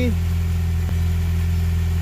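Honda H22 2.2-litre DOHC VTEC four-cylinder engine idling steadily, freshly refilled with synthetic oil after an oil change, and sounding good to its owner. A faint tick comes about a second in.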